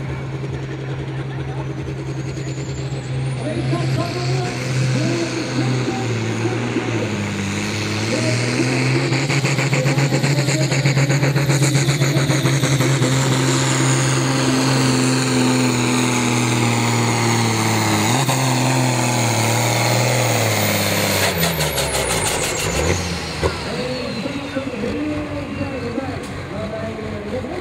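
Turbocharged diesel engine of a modified New Holland pulling tractor at full throttle, dragging a weight sled. The turbo whistle rises as it spools up a few seconds in, and the engine runs hard under load with small dips in pitch. Near the end the turbo whine falls away and the engine drops off as the pull ends.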